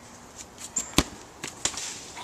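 A soccer ball being kicked: one sharp thump about a second in, with a few fainter ticks before and after it.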